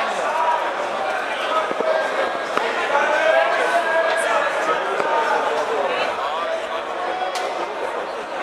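Audience chatter: many voices talking at once, with no music playing and a few sharp clicks.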